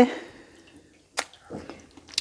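Mostly quiet, with one sharp click about a second in and a few faint soft clicks after it.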